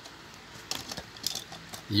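Light clicks and clinks of small diecast metal model cars being shifted on a plastic toy car transporter's decks, a short cluster of them in the middle.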